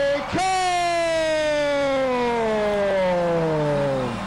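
Boxing ring announcer calling the winner in the blue corner, stretching the final syllables into long held shouts. A brief break comes just after the start, then one long call slides slowly down in pitch for nearly four seconds.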